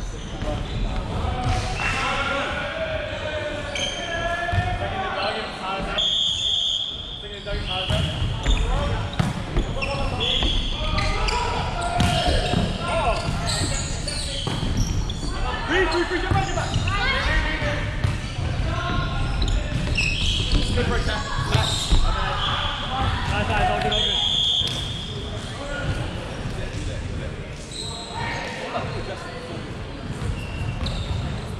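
Indoor volleyball rally in a large echoing sports hall: the ball is struck and bounced, and players' shoes scuff and squeak on the wooden court, with players' voices calling out.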